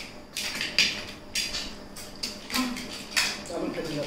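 Snail shells clinking against ceramic plates and a steel bowl as they are picked up and dropped, mixed with short, irregular sucking slurps as cooked freshwater snails are sucked out of their shells.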